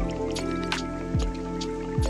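Lofi hip hop beat: sustained keyboard chords over a deep kick drum that hits about once a second, with sharp percussion hits between the kicks.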